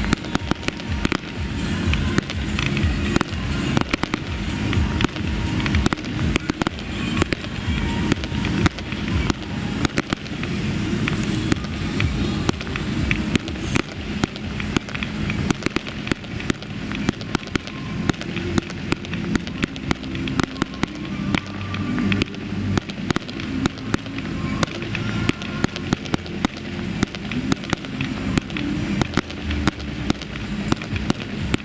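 Fireworks display going off continuously: a dense, rapid run of crackles and sharp bangs, many per second, with no letup.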